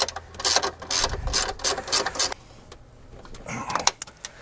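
A 15 mm ratcheting wrench clicking as it tightens the bolt on the upper engine mount. A quick run of clicks fills the first two seconds or so, and a few more come near the end.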